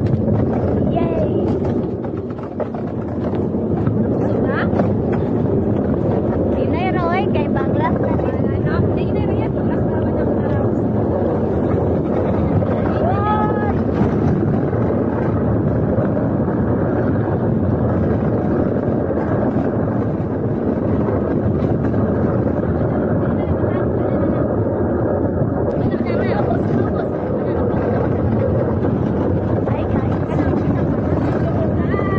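Gravity luge carts rolling down a wet asphalt track: a steady, loud rumble of the wheels, mixed with wind buffeting the microphone. A few short high voice calls rise over it, around a quarter and again near halfway through.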